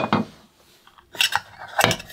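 Metal clinks and knocks: a portafilter set down on a wooden tabletop at the start, then the stainless steel bin of a knock box with spent coffee pucks in it gripped and lifted from its wooden block. The bin clinks about a second in and knocks again near the end.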